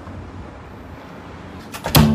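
A football kicked hard near the end: one or two lighter knocks, then a sharp, loud thud of the boot striking the ball. Before it, a steady low rumble of background noise.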